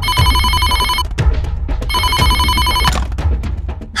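Corded office desk telephone ringing twice, each ring a rapid electronic trill about a second long.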